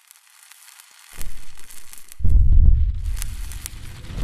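Logo-intro sound effects: a crackling, sizzling hiss with scattered clicks, joined about a second in by a deep low rumble that swells much louder just after two seconds.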